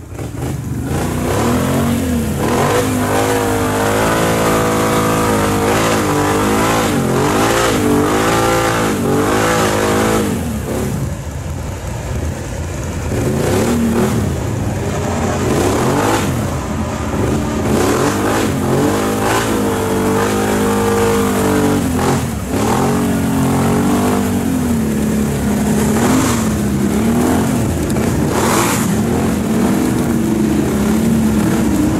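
Can-Am ATV's V-twin engine revving up and down over and over, with short drops back toward idle, as it fights to pull out of thick mud it is stuck in.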